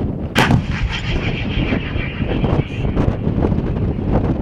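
A 152 mm 2A65 Msta-B towed howitzer fires one round about half a second in: a single sharp blast followed by a long rolling rumble and echo.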